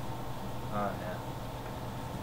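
A steady low hum of room noise, with one brief murmured vocal sound from a man about a third of the way in.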